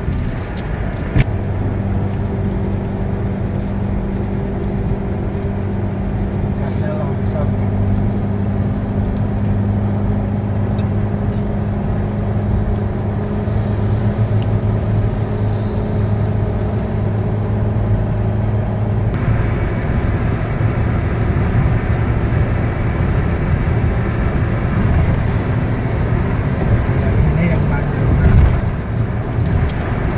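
Car interior road noise while cruising on a motorway: a steady drone of engine and tyres with a low hum, its tone shifting brightly about two-thirds of the way through.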